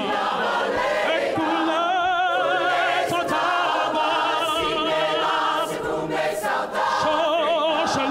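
Mixed-voice choir singing, with a male soloist's amplified voice leading over them; the voices hold long, wavering notes.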